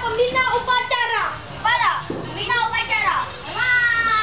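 Children's voices calling and shouting, a string of high-pitched calls, several sliding down in pitch.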